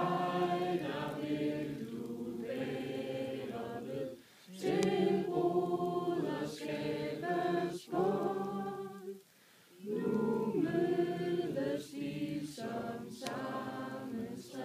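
A group of voices singing a Danish song together in sung phrases, with short pauses between phrases.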